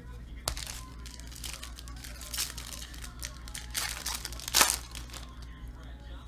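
Trading cards being flipped and slid through the hands, with crinkling of foil pack wrappers: irregular rustling with a few sharper crinkles, the loudest about three-quarters of the way through.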